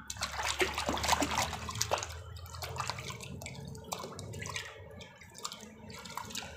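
Water splashing and sloshing in a bucket as a hand scrubs a plastic toy clean in muddy water, a busy patter of small splashes that is heaviest in the first couple of seconds and then goes on more lightly.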